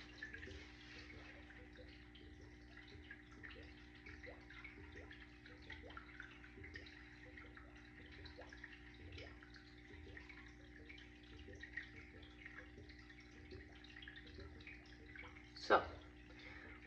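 Fine craft glitter poured and sifted over a wet slick-paint cactus piece: a faint, steady hiss with many small ticks, over a steady low hum.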